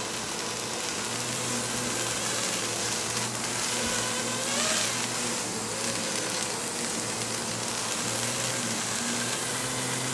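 Small FPV racing quadcopter's motors and propellers buzzing as it lifts off and flies, the hum wavering slightly with the throttle, over the steady hiss of a hose spray falling like rain.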